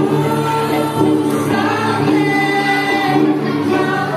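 Girls singing into microphones over a kolintang ensemble of wooden xylophones playing the accompaniment.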